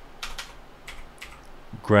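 Computer keyboard being typed on: a string of separate key clicks as a search term is entered.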